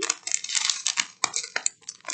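A small plastic zip bag of marquise-shaped rhinestone drills being handled: the plastic crinkles and the little stones click and jingle against each other, with a few sharper ticks in the second half.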